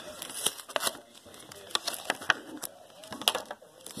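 Plastic and paper trading-card pack wrapper crinkling and crackling in the hands, with scattered sharp clicks, as the pack is opened and the first card pulled out.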